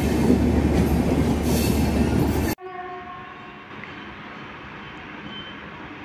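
A passenger train passes close by with a loud, dense rumble of wheels and coaches, which cuts off abruptly about two and a half seconds in. A brief horn then sounds, and after it comes a much quieter, steady background as an electric locomotive approaches from a distance.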